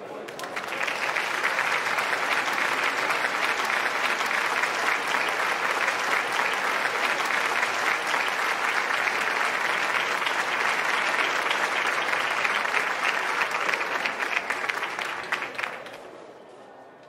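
Audience applauding, the clapping swelling in the first second, holding steady and dying away near the end.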